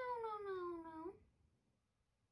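A young voice singing one long drawn-out 'nooo', sliding slowly down in pitch and stopping about a second in.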